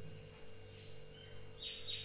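Faint bird chirps: a thin high call about a quarter-second in, then a few quick chirps near the end, over a faint steady hum.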